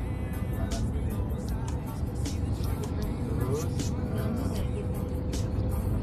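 Steady low engine and road rumble inside the cabin of a manual Daihatsu car driving in traffic, with faint music underneath.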